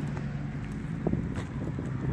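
Footsteps and camera handling on an asphalt-shingle roof, with wind on the microphone. Irregular low knocks and rumbles start about a second in, over a steady low hum.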